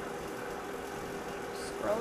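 Steady background hum with a faint constant tone, running unchanged; a man's voice begins near the end.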